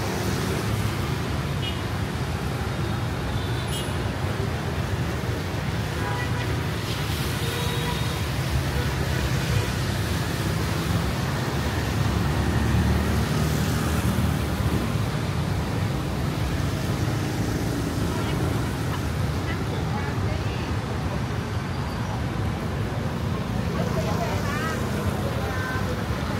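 Steady city street traffic: motorbikes and cars running past on a wet road, with voices of people nearby mixed in.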